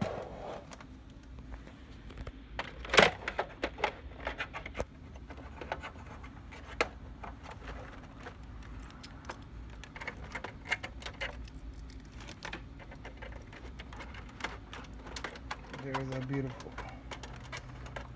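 Scattered clicks, knocks and rattles of cables and plastic connector plugs being handled and plugged into a monitor's back panel, with one sharp knock about three seconds in.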